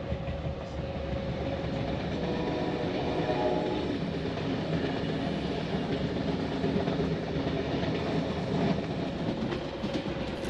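Sleeper train running, heard from inside the carriage: a steady, even running noise of the carriage on the track with a faint steady hum.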